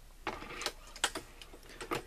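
A Dillon 550C reloading press being cycled, its powder measure bar and fail-safe rod moving with a handful of sharp metallic clicks and light rattling.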